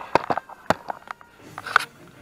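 A string of sharp clicks and light knocks, with a short rustle near the end: handling noise as hands work among the hoses and parts in a car's engine bay.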